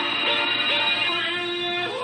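Background music: a song with a vocal, with quick repeated notes giving way to long held notes about halfway through.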